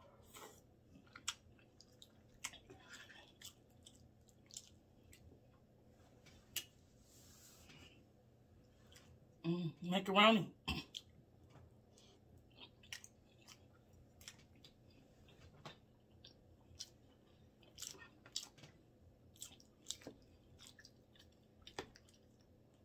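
Close-up mouth sounds of someone chewing soft food (collard greens and mac and cheese), with faint wet smacks and clicks scattered throughout. A short voiced sound breaks in about ten seconds in.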